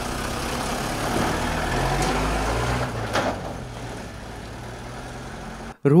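A heavy truck engine running steadily, growing louder over the first couple of seconds and then fading away, with a couple of brief knocks around the middle.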